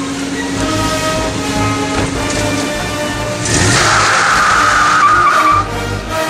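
Pickup truck pulling away, with a tire squeal starting about three and a half seconds in and lasting about two seconds, over background music.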